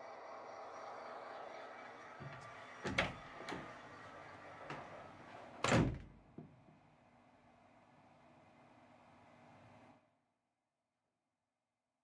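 Two dull thumps about three seconds apart, the second louder, over faint room noise that fades away. Near the end the sound cuts off to complete silence.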